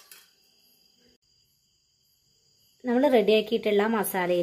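Faint, steady chirring of crickets in the background after a short click, then near silence. Nearly three seconds in, a woman's voice starts speaking loudly.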